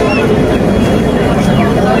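Busy market din of background voices and a steady traffic rumble, with short, high calls from caged young chickens scattered through it.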